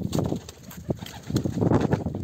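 Pigeon wings flapping as a bird takes off, a rapid flutter that is loudest in the second half.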